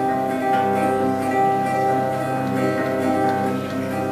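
Acoustic guitar playing the instrumental introduction to a folk song. Chords ring steadily, with fresh notes struck about once a second.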